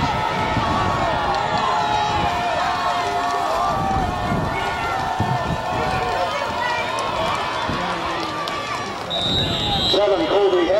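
Spectators in the stands shouting and cheering over one another through a running play. About nine seconds in, a referee's whistle sounds, blowing the play dead after the tackle.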